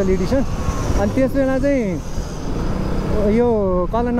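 A man talking in a few short phrases over the steady rush of wind and the running engine of a motorcycle being ridden through traffic.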